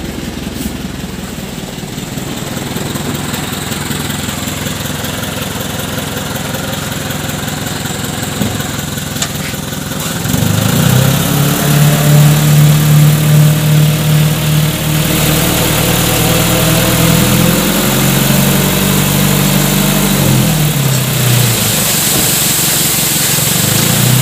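A small dump truck's engine idling, then speeding up about ten seconds in and running louder while the hydraulic hoist tips the sand-laden bed up to unload.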